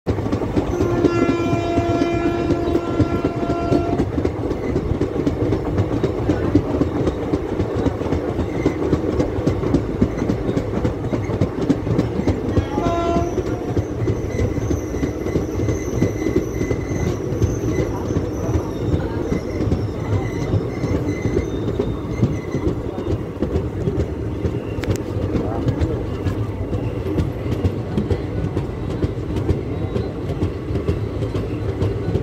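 Indian Railways passenger train running on the rails, heard from a coach window, a steady rumble throughout. The locomotive horn sounds for about three seconds near the start and gives a short blast about thirteen seconds in.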